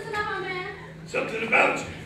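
A person's voice on stage: a drawn-out, wavering vocal sound, then two short, loud cries a little after the first second.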